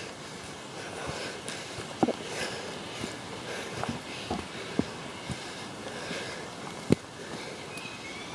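Walking on a trail, with a rain jacket rustling against the microphone and a few sharp handling knocks on the camera.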